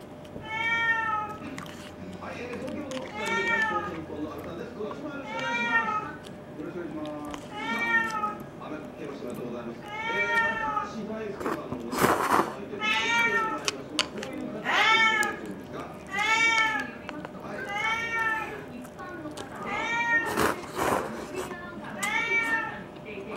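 A cat meowing over and over, about every two seconds, each meow rising then falling in pitch. There are a couple of brief rustles between the meows.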